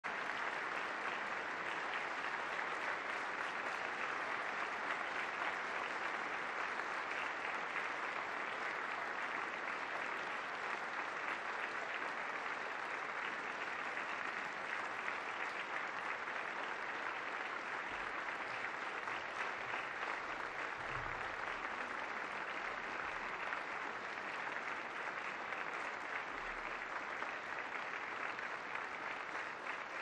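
A large crowd applauding, unbroken and steady throughout.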